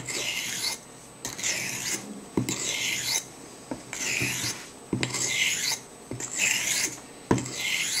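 A very old Wade and Butcher 7/8 straight razor scraping across a whetstone in seven even honing strokes, about one a second. Each stroke starts with a light click as the blade is flipped on its spine and set down on the stone.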